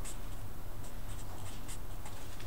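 Felt-tip marker writing on paper: a run of short, scratchy pen strokes as a word is handwritten.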